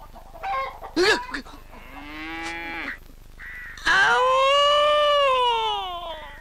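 A man wailing in comic crying. A first drawn-out cry comes about two seconds in; a louder, longer, high-pitched wail starts about four seconds in and rises and falls in pitch.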